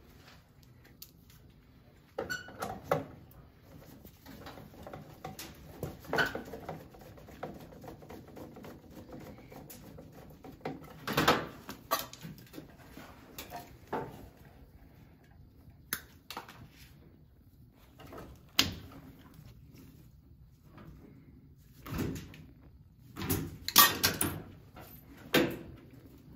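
Scattered clicks, taps and rustles of gloved hands and pliers working thermostat wires and screw terminals at a plastic Taco switching relay box, with a few sharper knocks, the loudest near the end.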